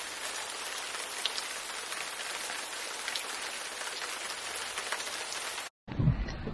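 Steady rain falling, an even hiss with a few faint drop ticks, cutting off suddenly near the end.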